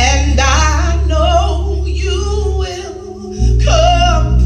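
A woman singing gospel into a microphone over sustained instrumental chords with a steady low bass. The low accompaniment drops out briefly a little under three seconds in, then comes back.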